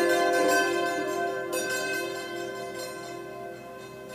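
Yanggeum, the Korean hammered dulcimer, with its metal strings left ringing: a held chord slowly fades, and a soft new note sounds about one and a half seconds in.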